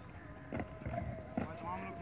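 Marching soldiers' boots striking a brick-paved parade path in drill step: a few sharp, evenly paced stamps, with a voice heard under them near the end.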